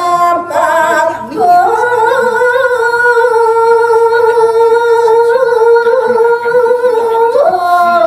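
A woman singing Balinese geguritan solo into a microphone, with short vocal ornaments at first and then one long held note for about six seconds, the pitch stepping up near the end.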